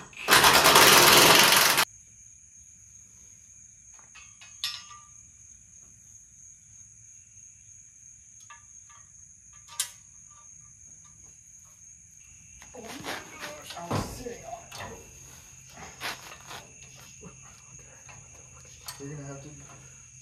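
A loud burst of an impact wrench hammering a bolt home for about a second and a half near the start. Crickets chirp steadily underneath, with scattered clanks of metal suspension parts being handled in the second half.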